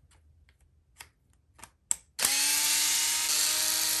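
Cordless electric screwdriver with a 2.0 mm hex bit backing out a front bumper screw: a few light clicks, then a steady motor whine starting about two seconds in.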